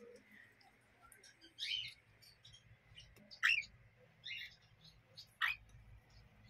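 Young pet parrots (cockatiel and lovebird chicks) calling: faint high chirps with four short, louder calls, two of them sliding quickly downward in pitch.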